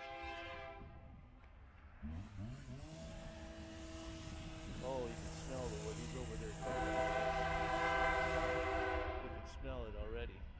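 A passing train's horn sounds in blasts: a brief one at the start, then the rumble of the train rising from about two seconds in under steady tones, and a long, loud horn blast in the last few seconds whose pitch drops near the end.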